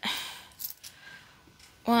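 A few faint clicks of loose coins being slid apart by hand on a paper page, about half a second to a second in.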